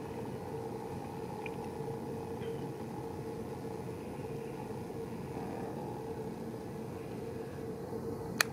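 Steady low mechanical hum with a constant faint tone, unchanging throughout.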